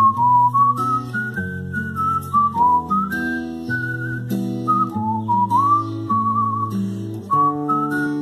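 A person whistling a melody over strummed acoustic guitar chords.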